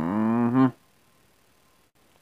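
A man's single drawn-out, low vocal yell without words, in the manner of Hank Hill's 'bwaah'. It lasts under a second, holding its pitch steady before cutting off.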